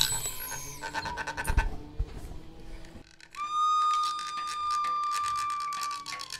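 Improvised sound effects: quick rattling, scraping clicks for about three seconds, then a single high whistle-like note that starts suddenly and is held steady to the end.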